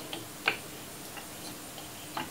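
A metal spoon stirring a wet mix of chopped brinjal and egg in a bowl, clinking against the bowl. There is one clear clink about half a second in, then a few faint ticks.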